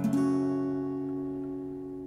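Acoustic guitar, capoed at the second fret, strumming an open E minor chord shape once at the start and letting it ring out, slowly fading.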